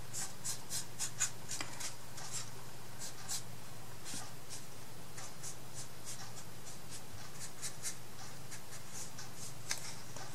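Paintbrush stroking paint along the edges of a bare laser-cut wooden craft box: a string of short brushing strokes, close together in the first three seconds and sparser after.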